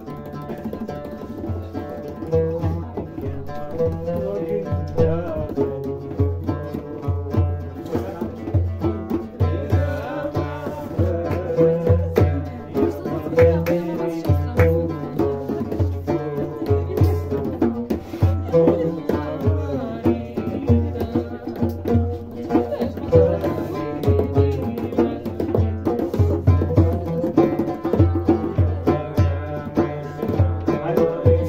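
Live acoustic music: an oud playing a plucked melody over a steady, even low beat, starting right away.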